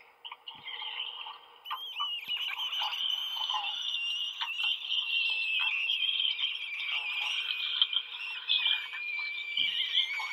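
Experimental extended-technique voice: a high, wavering, rasping sustained tone that begins about a second and a half in and slowly sinks in pitch, over faint scattered clicks.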